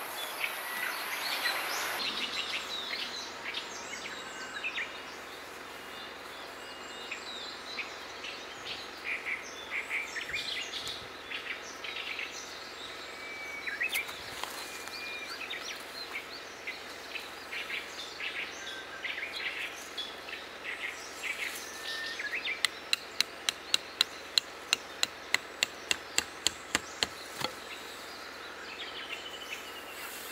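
Birds chirping throughout; in the second half, a run of about fifteen sharp, evenly spaced strikes, about three a second, from hammering a tent peg into the ground to anchor a tarp guy line.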